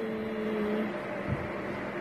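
Steady whirring hum of an induction cooker running under a lidded hot pot. A low held tone sounds through the first second and stops.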